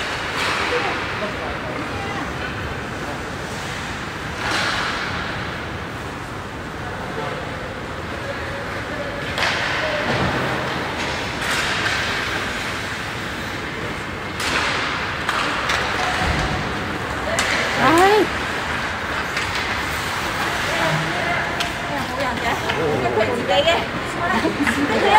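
Ice rink ambience during an ice hockey game: spectators talking in the background, with occasional knocks from sticks, the puck and the boards.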